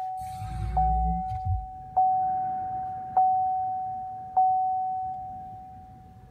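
Dashboard chime of a 2018 Chevrolet Volt sounding after the car is switched on: one clear tone struck four times about a second apart, each ringing and fading, dying away near the end. A low rumble of handling noise sits under the first chime.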